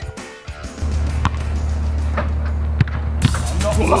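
Background music with a steady deep bass, joined by a quick ticking beat near the end. A few sharp knocks sound over it.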